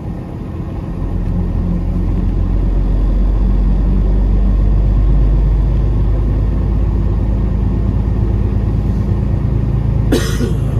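Peterbilt 389 semi truck's diesel engine pulling away, heard from inside the cab: a low rumble that builds over the first few seconds, then holds steady.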